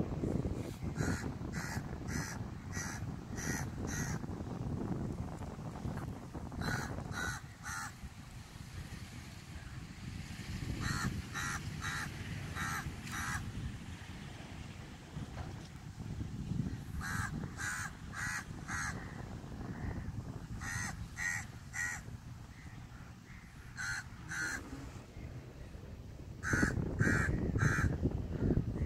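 A bird calling outdoors in runs of four to six short calls, a new run every few seconds, with wind rumbling on the phone's microphone, strongest near the start and the end.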